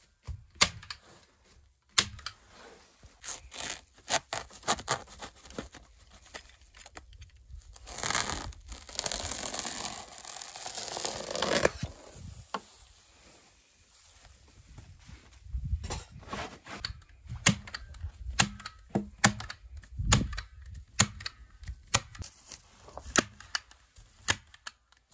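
Hand-held staple gun snapping staples through foil-faced foam insulation into a wooden wall: many sharp clacks at irregular intervals. Midway, for about four seconds, a continuous rustling and tearing as the insulation sheet is handled.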